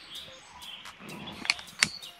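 Two sharp clicks about a third of a second apart, from a long-nosed utility lighter being worked to light a citronella candle in a glass jar, after a brief rustle of handling. Faint bird chirps sound in the background.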